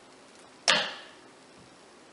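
Wooden wire soap cutter: its arm is pulled down through a loaf of cold process soap and lands with a single sharp snap a little under a second in, followed by a brief ringing tail.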